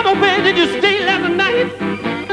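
Blues harmonica playing a run of short, bent notes with a quick warbling wobble in pitch, over guitar accompaniment.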